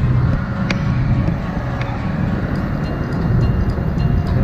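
City street traffic: motor vehicle engines running close by, a steady low rumble, with two sharp clicks in the first two seconds.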